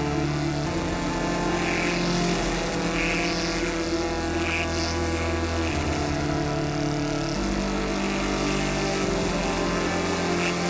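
Eurorack modular synthesizer playing a sequenced patch, its ES Fusion VCO voices run through ring modulation and filtering: low sustained tones that step to a new pitch every second or two. A few faint high chirps sound in the middle.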